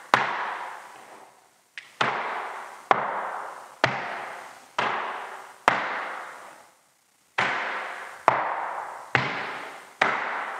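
Flamenco shoes stamping on a wooden floor: about ten sharp footfalls, roughly one a second, each ringing out in the room, with a short break about seven seconds in. The dancer is marking time in a six-count bulerías step.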